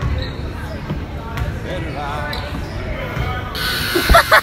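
Basketball bouncing on a gym court amid echoing voices and chatter in a large hall, with a louder rush of noise near the end.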